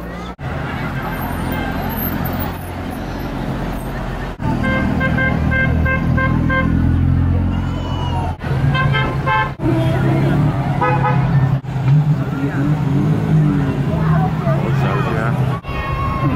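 Classic cars driving slowly past with their engines running, and car horns tooting in runs of short beeps several times. Voices of the crowd around, with the sound jumping abruptly at each cut between shots.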